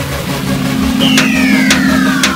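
Electronic logo sting: a steady low drone, joined about a second in by a falling pitched sweep, over an even beat of about four ticks a second.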